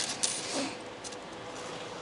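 Two light metallic clinks right at the start, then quiet room tone with a faint steady hum.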